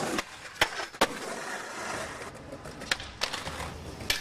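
Skateboard on concrete: about half a second in, two sharp board cracks in quick succession, then the wheels rolling, with a few lighter clacks of the board near the end.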